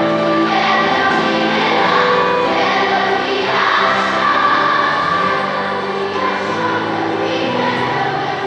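A massed choir of thousands of schoolchildren singing a song together with accompaniment. The voices carry through a large arena.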